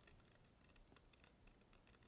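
Scissors snipping through cardstock: faint, quick, irregular small snips as a curved handle shape is cut out.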